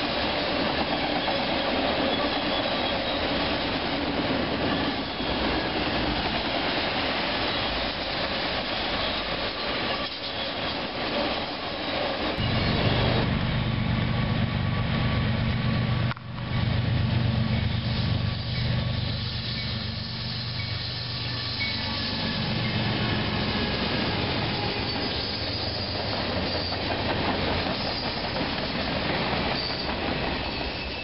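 Freight train cars rolling past on the rails, a steady clatter of steel wheels. About twelve seconds in, a diesel locomotive's engine hum takes over as a train approaches. Near the end, freight cars roll past close by again.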